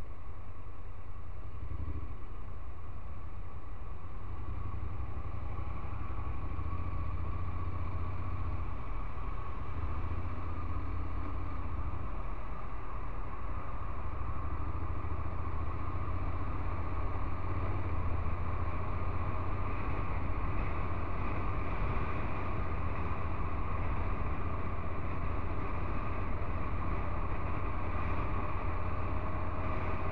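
Honda NC750X's 745 cc parallel-twin engine running steadily as the motorcycle moves off from slow traffic and rides on. Wind and road noise grow stronger in the second half.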